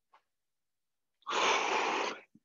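A man's heavy breath, one long rush of air lasting nearly a second, starting a little over a second in, from the exertion of alternating reverse lunges.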